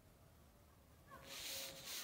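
Faint, distant Maghrib evening prayer broadcast over mosque loudspeakers. A chanting voice comes in about a second in, after near silence.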